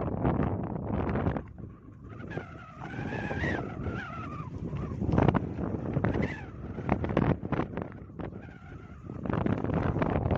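Wind buffeting the microphone in gusts on an open boat at sea, with a wavering high squeal for about two seconds near the middle.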